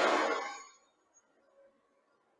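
The tail of a man's voice dying away in the first half-second, then near silence.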